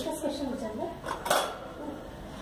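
Wire cage door rattling with two sharp metallic clinks, one right at the start and one just past a second in, as a budgie tries to lift the door.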